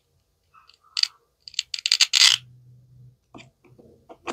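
Plastic toy knife clicking onto a toy watermelon, then the hook-and-loop (Velcro) fastener joining its two plastic halves tearing apart in a short crackling rip about a second and a half in, followed by a few light plastic clicks.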